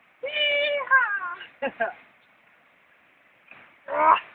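A person's high-pitched yell, held at one pitch for about half a second and then falling, followed by a few short vocal bursts; another short cry near the end.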